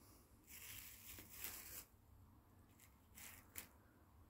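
Near silence with a few faint, short rustles: one stretch from about half a second in, and another a little after three seconds.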